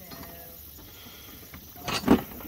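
Quiet outdoor background, then a sudden heavy thump near the end, as a footstep lands on a floating wooden dock that shifts underfoot.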